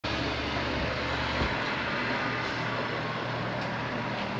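Steady street traffic noise, with a low vehicle rumble that fades out about a second and a half in.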